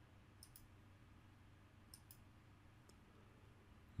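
A few faint computer mouse clicks over near silence: two quick double clicks about a second and a half apart, then a single click near the end.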